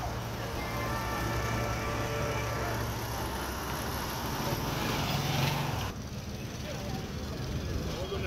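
A motor vehicle engine running steadily amid street noise. Its pitch rises briefly about five seconds in, and the sound drops off abruptly about six seconds in.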